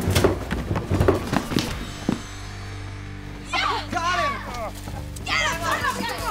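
A drama soundtrack: a quick run of knocks and thuds over a low, sustained music drone, then the drone alone. About halfway through, excited voices exclaim twice.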